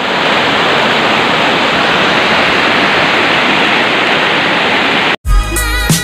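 Water rushing over rocks, a loud, steady noise that cuts off abruptly about five seconds in. Outro music with a beat starts right after the cut.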